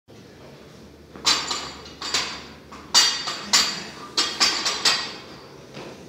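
A string of sharp metallic clanks, about nine in four seconds, each ringing briefly: steel barbell gear knocking against the squat-stand hooks as the loaded bar is set on the shoulders.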